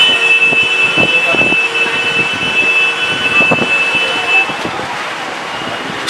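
Busy street-food stall ambience: background chatter and scattered clinks and knocks of plates, with a steady high tone sounding for about the first four and a half seconds.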